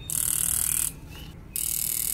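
Fuel injector solenoids from a 2013 Honda Accord V6 fuel rail buzzing with rapid clicking as an injector tester pulses them continuously, two injectors in turn, each for about a second. The clicking shows the solenoids are actuating, so these injectors work.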